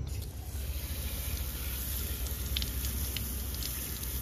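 Garden hose spray nozzle shooting a steady jet of water onto a pumpkin and paver stones, a continuous hiss.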